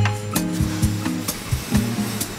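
Background music with a steady beat: sustained pitched notes over a bass line.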